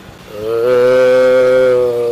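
A single long, low, steady vocal sound held at one pitch for about a second and a half, starting about half a second in.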